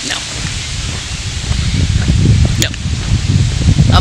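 Wind on the microphone of a handheld camera carried while walking, a rough low rumble that grows stronger through the second half, with a faint hiss over it.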